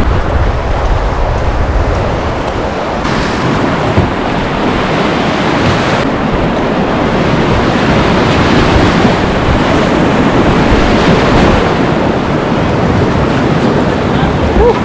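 Loud, steady rushing of river whitewater around a kayak running a rapid, heard from the kayak itself.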